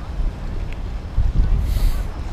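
Wind buffeting the microphone in a gusty low rumble, with bay water washing against a rocky shoreline and a short hiss of surf near the end.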